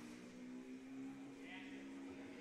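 Faint gym background: distant voices with a steady held hum running underneath, and a brief higher sound about a second and a half in.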